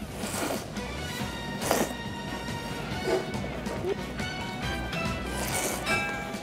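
Ramen noodles being slurped from a bowl in three short, loud slurps, over background music.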